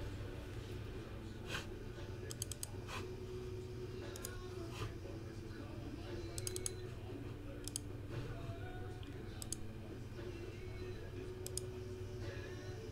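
Computer mouse and keyboard clicks, scattered and in quick runs of two to four, over a steady low hum.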